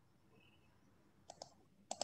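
Quick clicks at a computer, in two pairs about half a second apart, over near-silent room tone.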